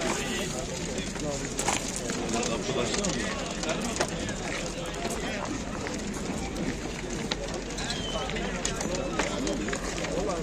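Indistinct background voices of several people talking at once, steady throughout, with scattered small clicks and knocks.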